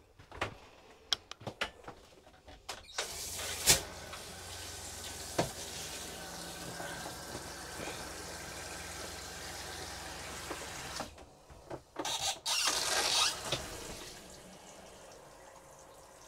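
RV shower hose and faucet running antifreeze into the shower pan as the shower line is winterized: a few handling knocks, then a steady flow starting about three seconds in with a low steady hum underneath. The flow breaks briefly, comes back stronger, then eases off near the end.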